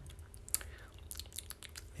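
Quiet lip smacks and small mouth clicks from tasting a sip of white wine, with one sharper click about half a second in.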